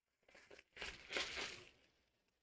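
A trading-card pack wrapper being torn open and crinkled by hand. The rustling tear starts about a quarter second in, is loudest around the middle and dies away near the end.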